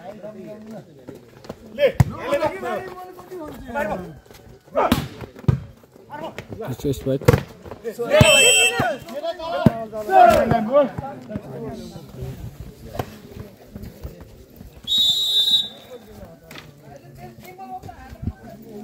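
Volleyball rally with players shouting and several sharp smacks of the ball being hit, then one short, high referee's whistle blast about fifteen seconds in.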